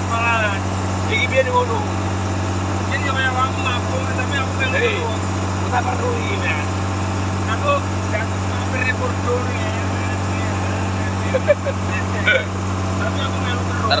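A fishing boat's inboard engine running steadily underway, a constant low drone, with water rushing along the hull.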